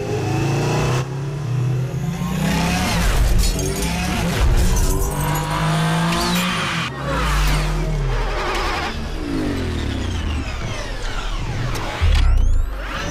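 Sound-designed engine whines of futuristic light cycles racing, many tones gliding up and down in pitch as they pass, over steady deep low notes. The texture changes abruptly every second or two.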